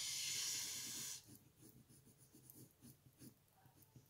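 A long breath out close to the microphone for about the first second, like a sigh; then faint, irregular scratching of a pencil colouring on paper.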